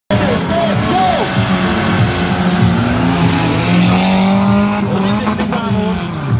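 Two cars launching side by side from a drag-strip start line, engines revving hard and tyres squealing as they accelerate away.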